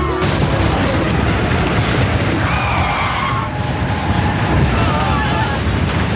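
Loud, crackling roar of a large jet airliner passing low overhead, starting abruptly just after the opening, with faint music over it.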